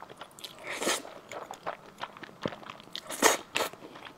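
Close-miked slurping and chewing of noodles: two loud slurps, about a second in and again just past three seconds, with small wet chewing clicks between them.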